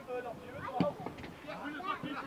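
Faint, distant voices of players shouting and calling across an outdoor football pitch, with one sharp knock a little under halfway through.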